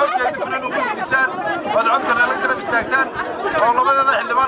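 Speech: a man talking through a handheld megaphone, with other voices chattering around him.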